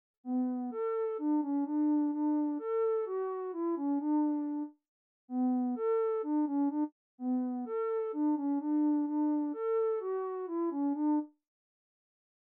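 A synth lead from the Vital software synthesizer playing a short melody: a mellow tone with clear overtones, in three phrases separated by brief gaps. A subtle chorus effect is being compared on and off.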